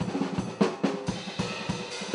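Drum kit played with sticks: a quick, busy run of snare and drum strokes, with cymbals ringing over them.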